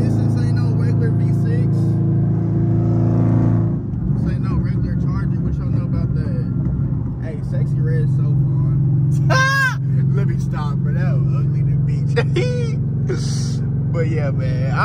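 Dodge Charger Scat Pack's 6.4-litre HEMI V8 droning steadily, heard from inside the cabin with the window down. About four seconds in the drone breaks up and turns rough, then settles back into a steady drone a few seconds later.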